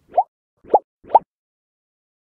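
Three short bubble-pop sound effects within about a second, each a quick upward-sliding blip, the later two louder than the first.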